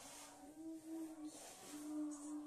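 A child humming long held notes: one note, a short break about one and a half seconds in, then another.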